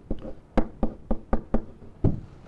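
A pen or stylus knocking against a hard digital writing surface as a word is handwritten: a run of sharp, short knocks, about four a second, one for each pen stroke.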